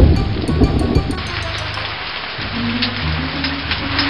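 Rain sound effect, an even hiss of falling rain, with a loud rumble of thunder at the start, over light background music.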